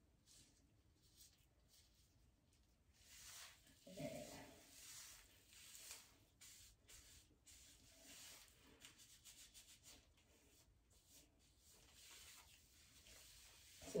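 Faint rubbing and rustling of hands working hair product through thick natural hair, in short irregular strokes, a little louder about four seconds in.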